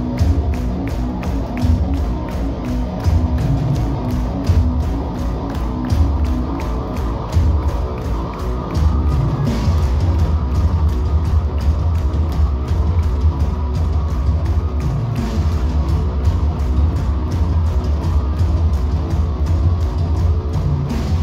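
Metalcore band playing live at full volume: heavy distorted guitars and bass over a steady, fast drum beat, heard from the crowd.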